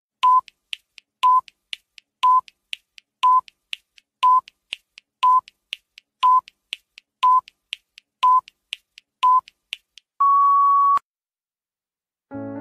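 Countdown timer sound effect: ten short electronic beeps one second apart, with faint ticks between them, ending in one longer, slightly higher beep about ten seconds in.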